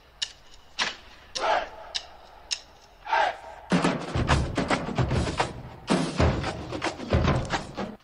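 Marching drumline: a count-off of stick clicks about every half second, then about four seconds in the full battery comes in, snare drums playing a fast cadence over heavy bass drum hits.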